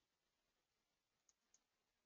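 Near silence, with two faint, brief clicks about a second and a half in, a quarter second apart.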